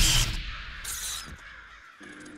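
Crow cawing as a loud rushing whoosh dies away in the first moments.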